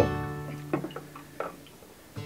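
Background music on a plucked string instrument, its held notes ringing and fading away.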